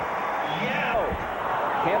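Arena crowd noise during live basketball play, with a few short, high sneaker squeaks on the hardwood court about half a second in and again near the end.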